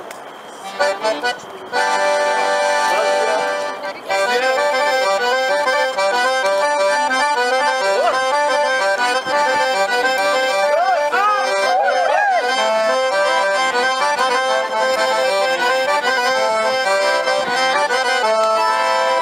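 Background music: a traditional folk tune in an accordion voice, with held notes changing in a steady rhythm. It is quieter at first and fills out a few seconds in.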